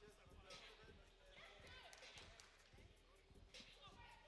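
Faint basketball bouncing, a few irregular dribbles and catches on the court, under faint voices.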